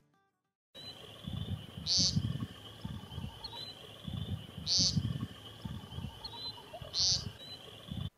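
American woodcock peenting: three short 'peent' calls about two and a half seconds apart, heard over a steady high trill in the background and some low rumbling.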